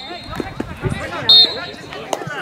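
Referee's whistle: one short, loud blast about a second and a quarter in, with voices and shouts on the pitch around it.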